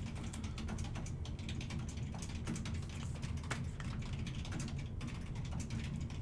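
Light, irregular clicking and rustling of plastic as a trading card is slid into a soft penny sleeve and then a rigid top loader, over a steady low hum.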